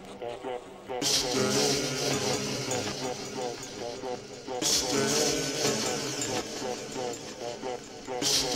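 Minimal techno track with the kick drum dropped out: a voice-like vocal sample wavers over a sparse electronic texture. A high hissing hi-hat layer comes in about a second in and again past the halfway mark.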